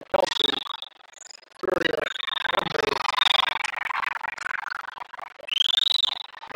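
Volleyball players and spectators shouting and cheering as a rally ends in a point. A high whistle sounds near the end.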